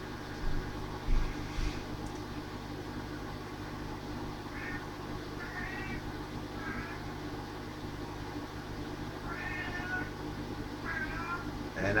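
A house cat meowing: about five short, faint meows starting about four seconds in, after a low thump near the start, over a steady low hum.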